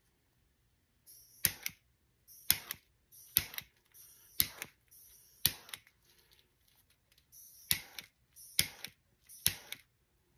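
A series of sharp clicks, roughly one a second and some in quick pairs, each trailing off in a brief hiss.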